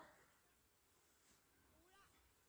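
Near silence, with a few faint wavering calls in the second half.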